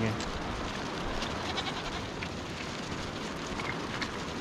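A large herd of long-haired hill goats on the move over a stony track: a steady shuffle of many hooves on rock, with faint bleats.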